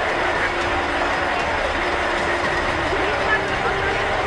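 Tatra fire engine running steadily, with a crowd talking behind it.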